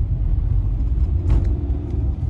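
Inside the cabin of a moving Hyundai Venue with its 1.0 litre turbo-petrol three-cylinder engine and iMT gearbox: a steady, loud low rumble of engine and road, with a faint steady engine hum above it.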